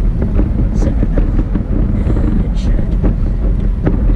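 Road and engine noise inside a moving car's cabin: a steady low rumble, with a few faint clicks and knocks.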